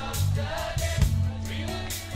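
Live pop band playing: a woman sings the lead over electric guitars, bass and keyboard, with a Pearl Roadshow drum kit keeping time with regular drum and cymbal hits.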